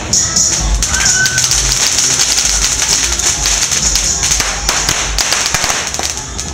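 Outdoor festival ambience: music playing in the background with many sharp pops and clicks, thickest in the second half, over a steady hiss and low rumble.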